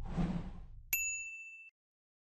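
Logo-sting sound effects: a soft whoosh with a low rumble fading out, then a single bright ding about a second in that rings briefly and stops.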